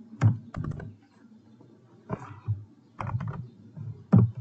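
Typing on a computer keyboard: irregular clusters of key clicks, a few keystrokes at a time, with short pauses between them.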